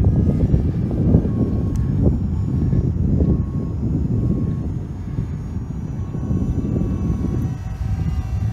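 Eachine EX4 brushless GPS quadcopter hovering and following overhead, its propellers making a steady buzz over a continuous low rumble.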